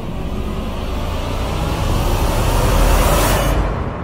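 A horror-style outro sound effect: a deep rumble and whoosh that swells louder to a peak about three seconds in, then fades away.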